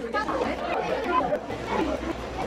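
Indistinct chatter of several people talking, without clear words.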